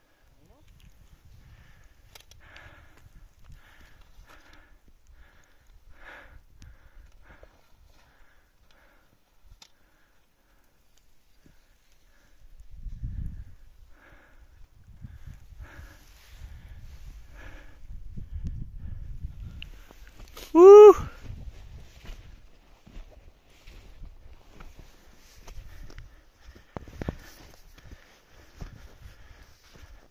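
Footsteps in deep snow, heard as uneven low thuds and light crunches, growing heavier about twelve seconds in. About two-thirds of the way through comes one short, loud voice call that rises and then falls in pitch.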